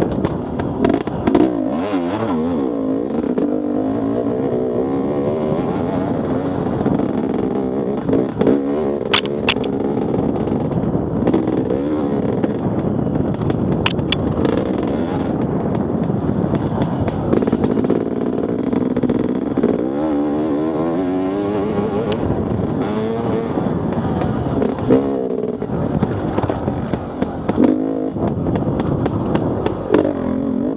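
Enduro dirt bike engine, heard from on the bike, revving up and down continuously as it rides a rough forest trail. A few sharp clicks cut through about a third and about half of the way in.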